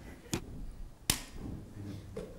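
Two sharp knocks, about three-quarters of a second apart, the second louder.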